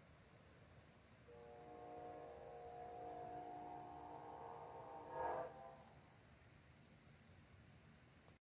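Distant locomotive air horn: one long chord of several steady notes, starting about a second in, swelling to a brief louder peak and cutting off at about five and a half seconds. Faint overall.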